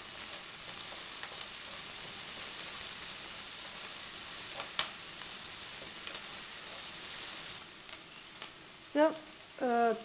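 Chopped onion and green chilies sizzling in hot oil in an aluminium pressure cooker, stirred with a spatula. The frying hiss is steady and high, with a sharp click about five seconds in, and it eases a little near the end.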